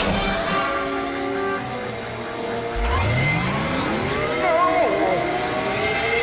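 Dramatic cartoon score over a machine sound effect that starts about three seconds in and whirs upward in pitch as the machine spins up.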